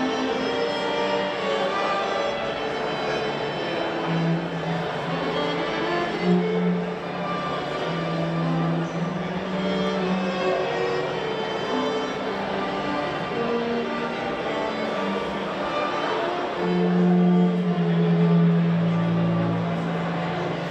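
A small string ensemble of violins and cello playing a piece live, with long held low notes under the melody. The playing swells louder near the end.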